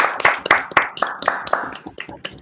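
Several people clapping over a video call, a quick, uneven run of claps from different participants mixed together, with some voices under them.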